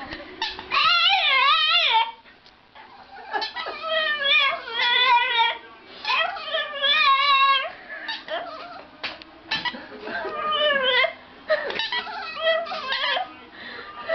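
A dog yowling and whining in long, wavering cries that slide up and down in pitch, in about five bouts with short pauses between them.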